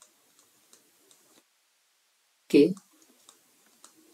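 A few faint, scattered clicks of a stylus tapping a tablet screen while handwriting, with one short spoken syllable just past the middle.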